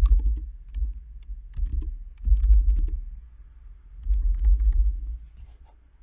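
Typing on a computer keyboard: a run of quick key clicks, broken by several louder low rumbles about a second in, in the middle and near the end.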